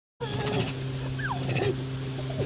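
Short whining vocal sounds, one gliding sharply downward in pitch, over a steady low hum.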